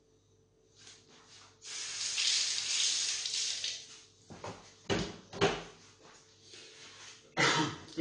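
Water running from a kitchen tap for about two seconds, followed by a few sharp knocks of kitchenware on the counter.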